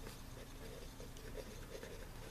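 A pen writing letters on paper in faint, short strokes.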